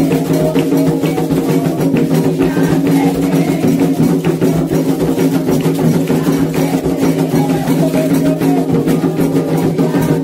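Candomblé atabaque hand drums played in a fast, steady rhythm for the dance of Iemanjá, under a group singing the chant.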